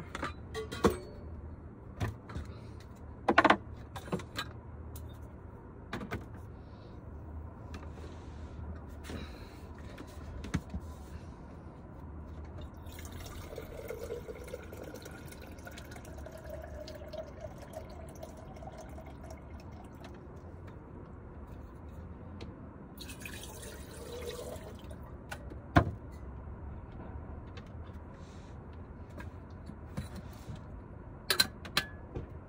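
Water being poured into an electric kettle, its tone rising as it fills, with a second short pour a few seconds later. Knocks and clunks of handling come before it and a sharp knock near the end, over a steady low hum.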